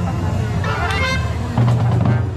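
Marching band of brass and drums playing: sustained brass notes, with a short accented hit near the middle and a loud low brass chord coming in about three quarters of the way through.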